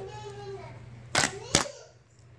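Shag carpet being yanked up off a nailed wooden tack strip at the corner of a room. Two sharp tearing pops, about a third of a second apart and a little over a second in, as the carpet backing comes free of the strip's nails.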